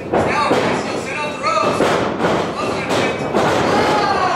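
Pro wrestling bout: several sharp thuds of strikes and a body slamming onto the ring mat, with shouting voices between the hits.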